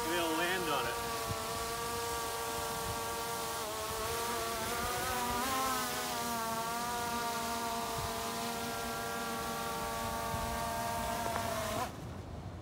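Skydio 2 quadcopter drone hovering, its propellers making a steady whine that shifts in pitch a few times as it moves, before it sets down on its case near the end.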